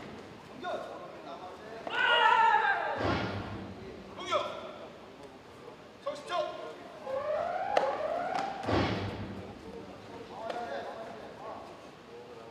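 Taekwondo sparring: the fighters shout, and kicks land on body protectors with two heavy thuds, about three and nine seconds in, plus a few sharper smacks between them.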